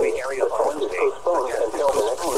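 Speech only: the NOAA Weather Radio broadcast voice reading the required weekly test message, played through a Midland weather radio's small speaker and sounding thin, with little bass.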